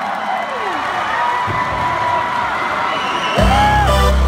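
Concert crowd cheering and whooping, with high held cries rising and falling. About three and a half seconds in, loud bass-heavy music starts abruptly over them.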